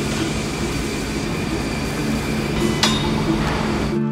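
Steady industrial noise of an iron foundry at work, with sparks flying off the furnace and molten iron. A single sharp metallic clink comes a little under three seconds in.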